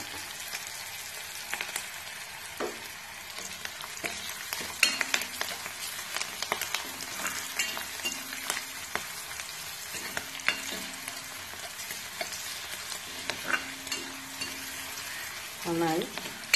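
Garlic, green chillies and curry leaves sizzling in hot oil in a cast-iron kadai, a steady hiss broken by scattered clicks and scrapes of a spatula stirring them.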